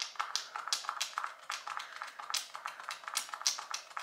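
Quick, irregular clicking, roughly three clicks a second, from a nearly empty L'Oréal Infallible Fresh Wear foundation bottle being worked by hand to get the last of the foundation out.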